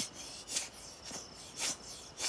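Rhythmic rasping rubbing strokes, about two a second, each a short scratchy swish.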